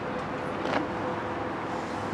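Steady outdoor background noise with a faint steady hum, and one short sharp click a little before the middle.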